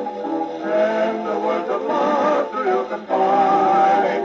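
1920s dance band music played from a 78 rpm shellac record on an acoustic phonograph with a gooseneck tonearm and soundbox. The sound is thin, with almost no bass. Wavering held notes lead into a long sustained note in the last second.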